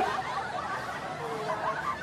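Faint, soft laughter: a quiet snicker from a person, with no clear words.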